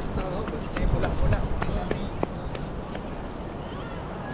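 Wind buffeting the microphone, strongest about a second in, with people's voices and a run of short, sharp clicks.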